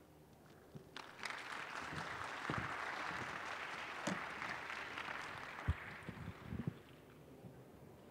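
Audience applauding, starting about a second in and dying away by about six and a half seconds, with a single sharp knock near the end of it.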